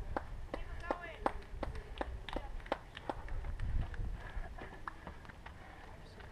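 A runner's footsteps on a rocky dirt trail: a quick, even patter of sharp footfalls, about three a second, fading after the first three or four seconds.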